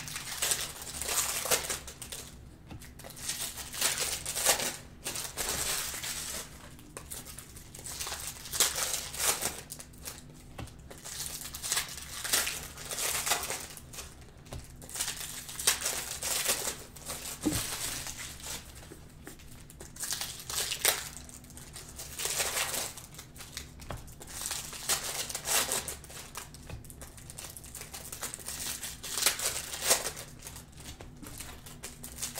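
Cellophane wrappers of Panini Prizm Cello basketball card packs being torn open and crinkled by hand, the crinkling coming in short bursts every second or two.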